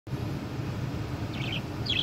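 A small bird chirps twice in quick high bursts, heard from inside a car over a low steady hum.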